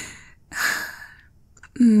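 A woman's two breathy sighs close to a binaural microphone, the second about half a second in, followed near the end by a soft hummed 'mm'.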